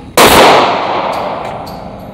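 A single gunshot in an indoor shooting range, loud enough to clip the phone microphone, about a quarter second in, with a long echoing tail dying away over the next second and a half.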